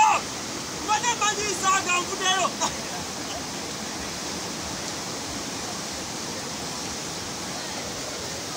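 River rapids rushing steadily over rocks, with voices calling out over the water in the first three seconds.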